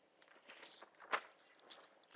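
A few faint footsteps, separate short knocks and scuffs, the clearest about halfway through.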